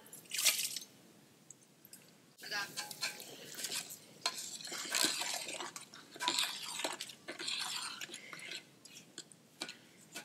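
Cooked mutton pieces tipped from a bowl into a large aluminium pot of thick khichda with a short wet plop about half a second in. From about two and a half seconds in, a long-handled ladle stirs the thick porridge: irregular wet slopping and squelching with the ladle scraping the pot.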